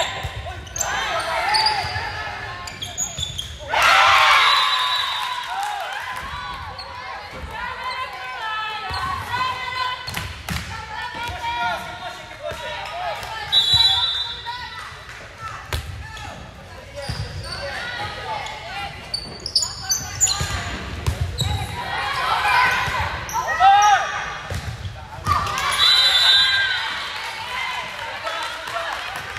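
Indoor volleyball play echoing in a gym: players' voices calling out over several sharp smacks of the ball being played, with a few short high squeaking tones.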